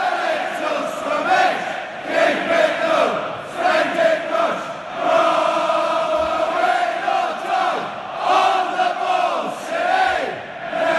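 A stadium football crowd singing a chant together: a dense mass of voices holding sung notes, swelling and easing every second or two.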